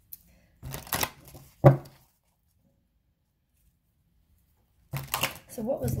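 Tarot cards being handled and shuffled by hand: a short rustle of cards about a second in, then a sharp snap of the deck. After a pause, more card rustling starts near the end, followed by a spoken word.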